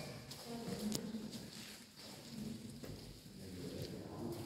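Faint, distant murmur of people's voices with a few light clicks and knocks.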